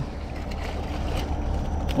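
Steady low drone of a ship anchored out on the river, with a faint even hiss over it.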